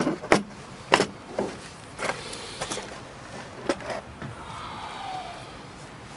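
Hard plastic clicks and knocks as a DeWalt DW088K cross-line laser level is handled and fitted against the moulded plastic insert of its carry case, six or so sharp clacks in the first four seconds with rustling between.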